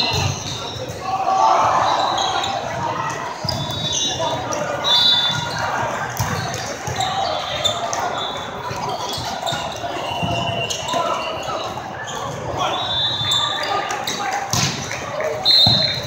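Volleyball rally in a large, echoing hall: the ball is struck several times amid players' shouts and a background din of voices. Short referee whistles sound now and then from courts around the hall, and a loud whistle comes near the end.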